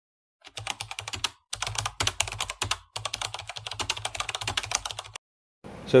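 Rapid, dense clicking in three runs of about one to two seconds each, starting about half a second in and stopping shortly before the end.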